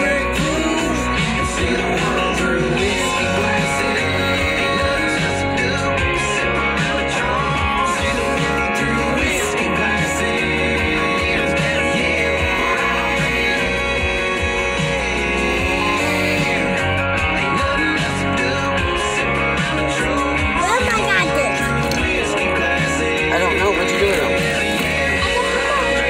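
A guitar song with vocals playing from the car radio inside the cabin, with singing over it.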